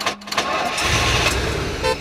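Car engine being started with a push button: a few short clicks, then the engine catching with a low rumble about a second in.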